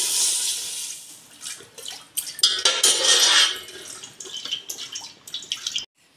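Milk pouring from a carton into an aluminium pot, a steady splashing pour that fades out about a second in. A second, shorter pour comes about two and a half seconds in, with a few clicks of handling between the two.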